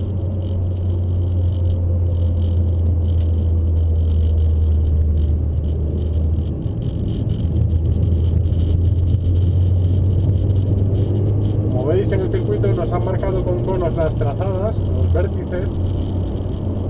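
Peugeot RCZ R's turbocharged 1.6-litre four-cylinder engine and road noise heard from inside the cabin on track: a steady low drone with no hard revving, its pitch shifting about six seconds in.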